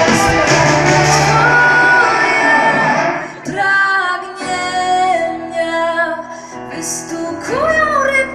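Live rock band with a female lead singer. The loud full band drops away about three seconds in, leaving a quieter, sparser passage of singing over held notes.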